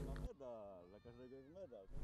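A faint, drawn-out voice whose pitch rises and falls several times, lasting most of the quiet gap.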